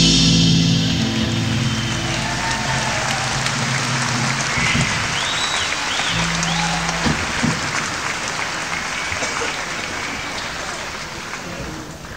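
A rock band's closing chord ringing out over a concert audience applauding and cheering, with whistles from the crowd in the middle; the applause fades down toward the end.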